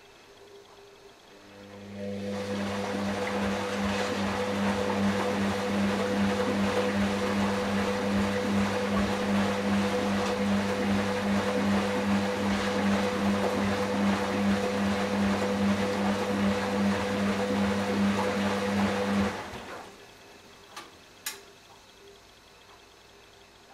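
Hoover DynamicNext washing machine moving water, a steady electric hum under rushing water. It starts about a second and a half in and cuts off suddenly near the end, followed by two faint clicks.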